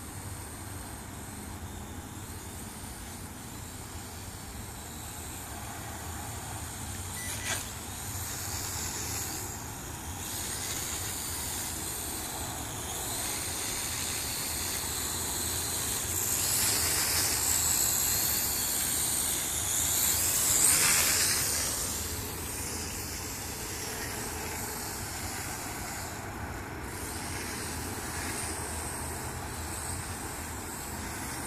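Ares Ethos QX 130 quadcopter's motors and propellers whirring in flight, growing louder as it passes close overhead about two-thirds of the way through. There is a short click about a quarter of the way in.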